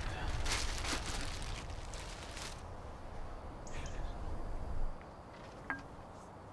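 Wind rumbling on the microphone. Rustling and faint laughter fill the first couple of seconds, and there are weaker rustles later.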